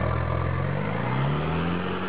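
Four-wheel-drive's engine revving under load, its note rising steadily in pitch as it pulls up a steep dirt climb.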